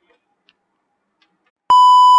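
Near silence, then near the end a single loud, steady TV test-pattern beep starts, added as a colour-bar transition effect.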